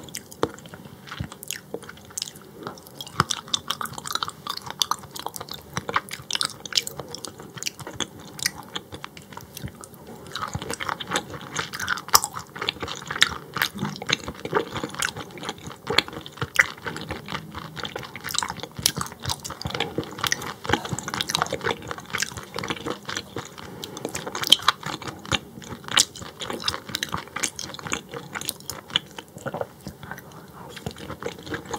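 Close-miked chewing of raw croaker sashimi: a dense, continuous run of small wet clicks from the mouth.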